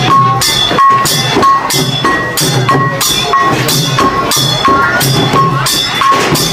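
Khmer chhay-yam festive drum music: drums beaten in a repeating rhythm, with a bright metallic strike ringing out about every two-thirds of a second.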